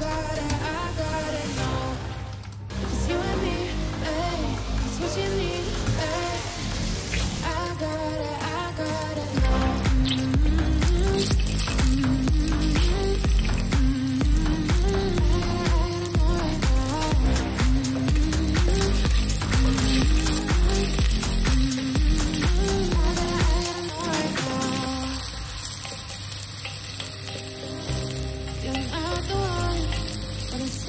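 Background pop music with a melody plays throughout. From about a third of the way in, sliced onion and garlic sizzle as they fry in hot oil in a stainless steel pot.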